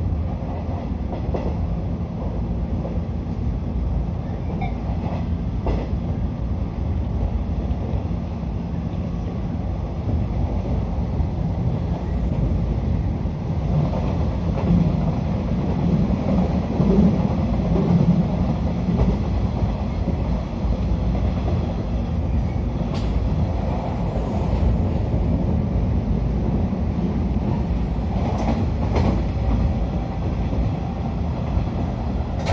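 Interior running noise of a JR 113-series electric train at speed: a steady rumble of wheels on rail with a few faint clicks. The rumble swells louder for a few seconds in the middle.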